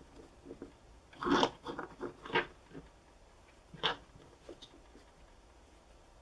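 Cloth being handled and folded by hand: a few brief rustles, a cluster of them from about a second in and one more near four seconds.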